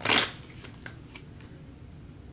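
A short burst of a tarot deck being shuffled in the hands right at the start, followed by a few faint clicks of cards.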